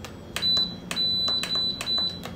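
Crock-Pot Express pressure cooker control panel beeping as its timer plus button is pressed over and over to raise the cooking time. Each press gives a click and a high-pitched electronic beep: one short beep first, then longer runs of beeping.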